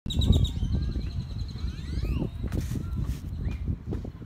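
Birds chirping, with short trilled and gliding calls, over a loud low rumble of wind on the microphone.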